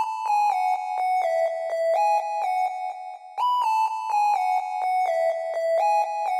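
Solo synth lead melody from FL Studio's 3x Osc synthesizer, each note gliding into the next with portamento. The short descending phrase starts over about three and a half seconds in.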